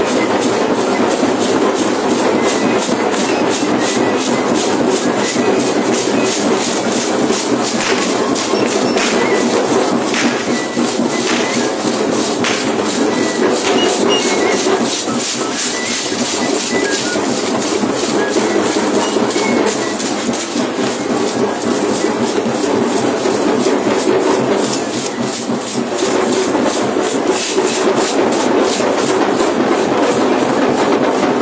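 Many jingle rattles (sonajas) shaken together with a drum, keeping a fast, steady dance rhythm.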